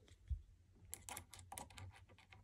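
Faint clicks and taps of a small screwdriver working a screw on the check valve bracket inside a Keurig coffee maker, metal tip against screw head and plastic. A soft low thump comes about a third of a second in, and the clicks cluster in the second half.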